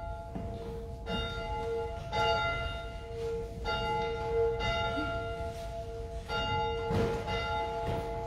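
Church bell tolling, struck again about once a second, each stroke ringing on into the next over a steady hum.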